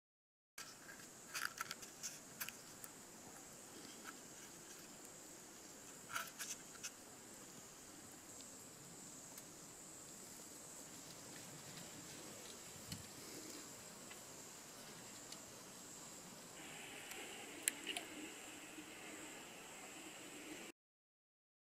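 Faint, steady high-pitched drone of insects, with a few soft clicks and taps scattered through it. A second, lower drone joins near the end.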